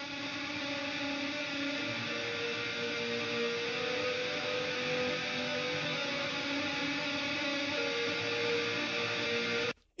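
Mix playback of ambient electric lead guitar tracks with long held notes, widened by a stereo-width reverb send. The playback cuts off suddenly near the end.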